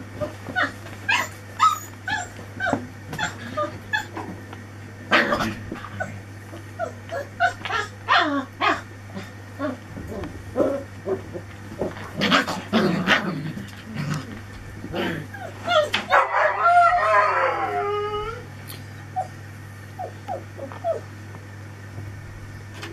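Four-week-old Anglo Wulfdog puppies yipping and whimpering in play, many short high calls in quick succession, with a longer wavering howl about three-quarters of the way through.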